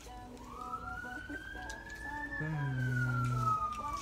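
Emergency vehicle siren wailing: one slow rise in pitch over about two seconds, then a slow fall.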